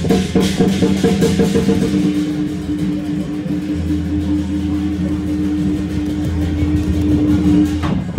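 Lion-dance percussion ensemble playing a rhythmic beat of sharp strikes. From about two seconds in the beat drops back to a steady held ringing tone over a low hum. Near the end the full, dense beat comes back in suddenly.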